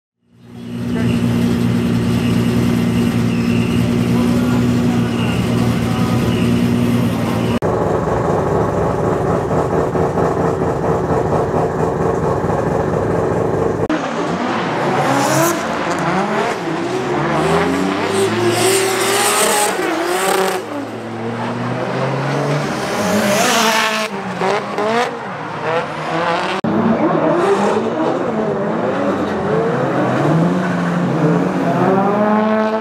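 Drift cars at full throttle, their engines revving up and down through a corner, with tyres squealing in several bursts. It is preceded by a steady drone with fixed pitches that shifts in tone partway through.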